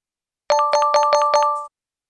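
A quick chiming reward jingle: about six rapid struck notes with held ringing tones, lasting about a second and stopping short. It sounds as a five-star rating pops up, signalling a completed, correct exercise.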